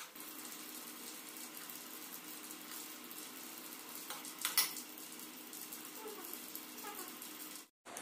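Gravy sizzling gently in a steel kadai on an induction cooktop, with a faint steady hum under it. About four and a half seconds in there is a brief clatter as green peas are added with a ladle. The sound cuts off just before the end.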